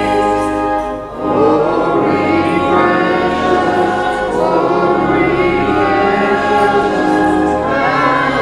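Church choir and congregation singing a hymn, sustained chords with a short break between phrases about a second in.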